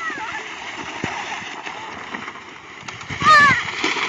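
A steady rushing noise runs throughout, and a high-pitched voice calls out briefly a little past three seconds in.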